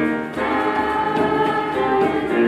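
A student choir singing held notes in chords, moving to a new chord about half a second in.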